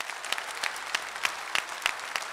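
A seated audience applauding: a dense run of many hands clapping, with a few sharper claps standing out.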